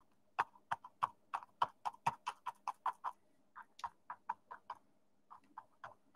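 Dry scruffy paintbrush pouncing on the painting surface: a run of short, dry taps, about four a second, pausing briefly a little past halfway and then going on.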